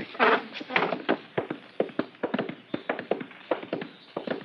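Radio-drama sound effects of the cash being gathered up and put away: a quick, irregular run of clicks and knocks.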